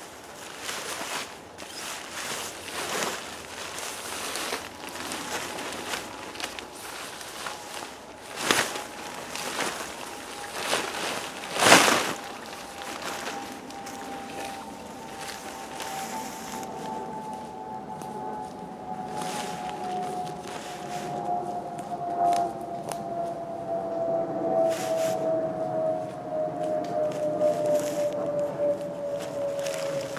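Rustling and crackling of a 3 m square DD Hammocks tarp being pulled from its bag, shaken out and spread over dry leaf litter, with a sharp snap of the fabric about 12 seconds in. From about a third of the way in, a steady drone slowly falls in pitch and grows louder.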